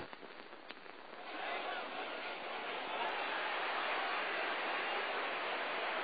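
Arena crowd noise, a steady hubbub without distinct voices that swells up about a second in and then holds.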